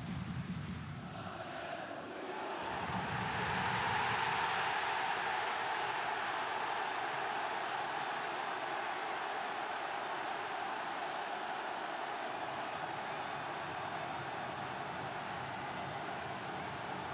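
Football stadium crowd erupting into cheers for a goal about two and a half seconds in, then holding a steady roar.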